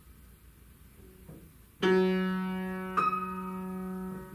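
Grand piano: a low G struck about two seconds in, then a high E struck about a second later, both notes ringing on and slowly fading. The two notes mark the bottom and top of a singer's range, low G to high E.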